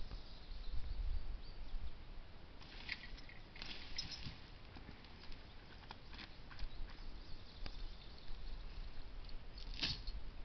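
Leafy branches rustling and twigs crackling as the uprooted beech stump and its brush are handled, with a few sharper crackles about three and four seconds in and again near the end, over a low rumble.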